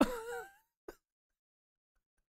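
A man's brief high, wavering laugh trailing off, followed by a single faint click and then silence.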